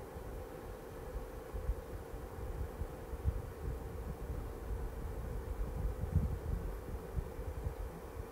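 Quiet background noise: a steady faint hum with irregular low rumbling underneath.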